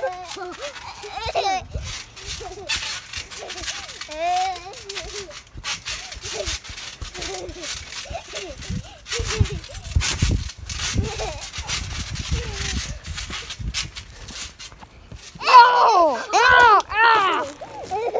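Children's voices and laughter mixed with repeated thumps and handling rustle as a phone is carried while bouncing on a trampoline. Near the end comes a loud, high-pitched burst of a child's laughter.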